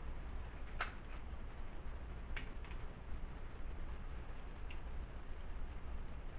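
King crab leg shell cracking as it is cut open with kitchen shears: two sharp snaps about one and two and a half seconds in, then a few fainter clicks, over a steady low hum.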